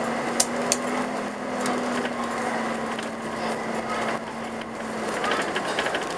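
Cabin noise inside a Karosa B731 city bus on the move: a steady hum over road noise, with sharp knocks and rattles from the bus body, two in the first second and a cluster near the end.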